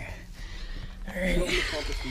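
Handling noise from a camera being passed down into a pit, a low rumble, then a man's muffled voice in the second half.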